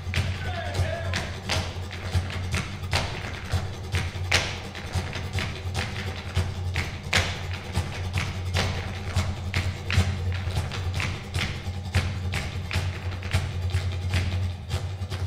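Flamenco footwork: heel and toe strikes of a dancer's shoes on a wooden stage, quick and irregularly spaced, mixed with hand clapping, over a steady low drone from the accompanying band.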